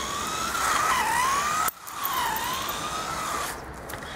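Electric motor of a radio-controlled Huan Qi mini buggy whining, its pitch rising and falling as the buggy speeds up and slows. The sound breaks off suddenly for a moment a little under two seconds in, then the whine resumes.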